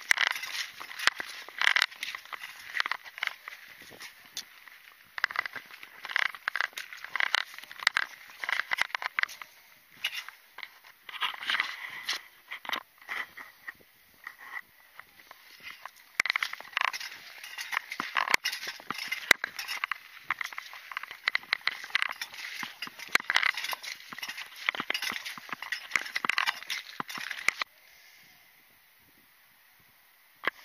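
Footsteps crunching on shingle: an irregular run of pebble crunches and clicks with each stride. They stop abruptly about two seconds before the end.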